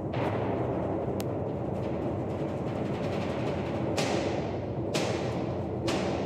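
Symphony orchestra playing loud, dense sustained chords in the low register, cut by heavy percussive strokes that ring off: one at the start and, after a gap, three about a second apart in the last two seconds.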